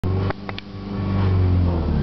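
Turbocharged K20 four-cylinder of an Acura RSX Type S running steadily, heard from inside its cabin. A few light clicks come about half a second in, the engine sound dips briefly, then builds back up.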